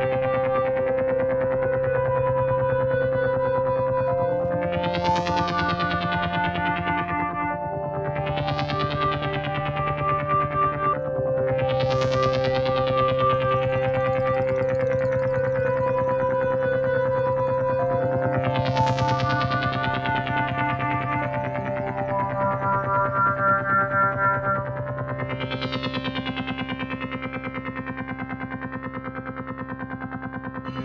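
Ambient synthesizer score: sustained drone chords that shift every few seconds, with five bright, swelling sweeps that rise and fade away over the held notes.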